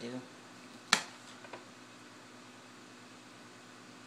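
One sharp knock of a kitchen knife striking a cutting board about a second in, as a lemon is cut, followed by a fainter tap. A low steady hum runs underneath.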